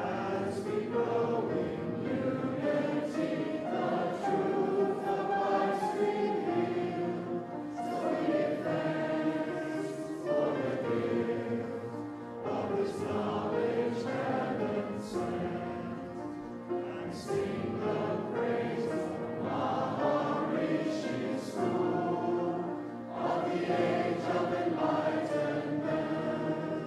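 A group of voices singing together in held, sustained notes, like a choir.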